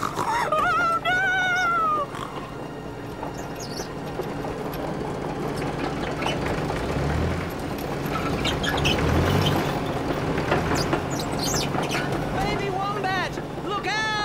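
Bulldozer engine rumbling and growing steadily louder as it approaches, with a few low thuds along the way. It starts just after a short high cry whose pitch rises and then falls.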